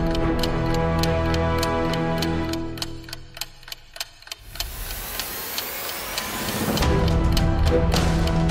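Background music with a steady, fast ticking beat like a countdown clock. About three seconds in the music drops away to a few ticks, then a rising whoosh builds until the full music returns near the end.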